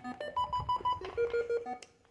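Small electronic device beeping: a quick run of about four higher beeps, then a run of lower beeps.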